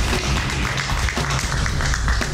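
Background music with a sustained bass line.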